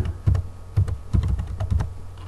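Computer keyboard typing: a quick run of about ten keystrokes as a word is typed out.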